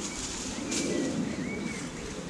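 Wild birds calling: a low call lasting about a second near the start, and two short higher chirps.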